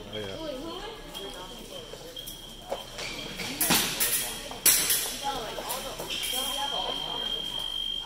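Fencing bout action: a few sharp clacks of footwork and blade contact about four and five seconds in. Then a steady high electronic tone from the fencing scoring machine for the last two seconds, the signal that a touch has registered. Background chatter throughout.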